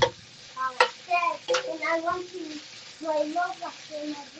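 A child's voice talking quietly in the background over sliced peppers and onions sizzling in a skillet, with a metal spatula clicking and scraping against the pan a few times as they are stirred.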